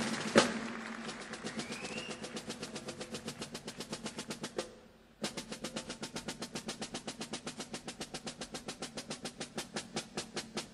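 Live drum kit: one loud hit about half a second in, then a fast, even stream of light, sharp strokes, about seven a second, that stops briefly just before halfway and then carries on.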